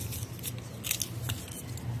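Hand pruning shears snipping through small lemon-tree shoots and leaves: a few sharp snips in quick succession, the loudest about a second in.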